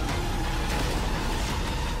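Film-trailer sound design: a steady, dense rumble with a heavy low end and a faint held tone above it.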